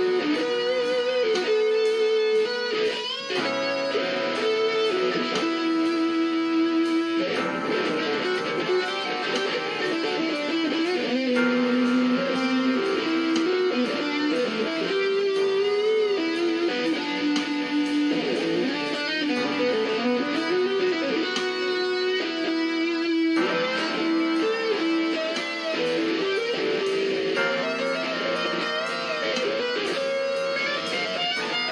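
Electric guitar playing a bluesy jazz solo, a single-note line with string bends and vibrato. Underneath it, held chords change about every four seconds.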